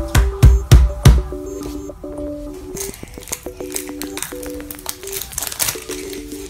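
Background music with a simple held-note melody throughout. In the first second a hand strikes down on a tabletop four times with loud thumps. After that comes a run of crinkling as a plastic wrapper is torn open.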